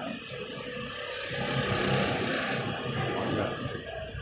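Street traffic: a motor vehicle passes, its engine and tyre noise swelling to a peak about two seconds in and then fading.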